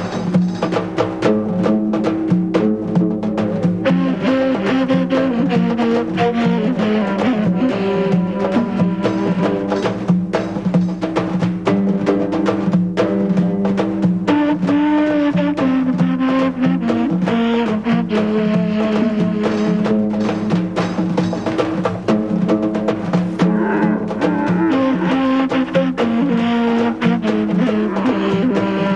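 Film soundtrack music: sustained melodic instruments moving from note to note over frequent drum beats.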